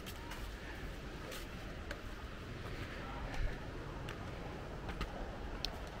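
Quiet outdoor background with a few soft, irregular footsteps on concrete steps as someone climbs a stairway.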